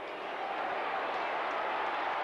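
Large stadium football crowd, its noise building steadily louder as a long set shot at goal travels toward the posts.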